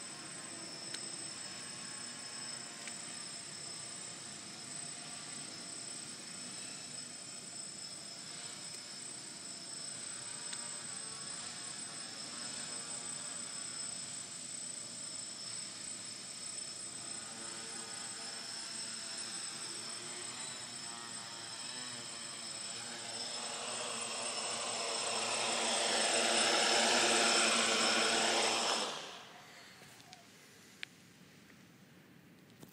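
GAUI 500X quadcopter's electric motors and propellers buzzing in flight with a steady high whine. The buzz swells as it comes close over the last several seconds, then stops abruptly about a second before the end as the quad sets down and its motors cut.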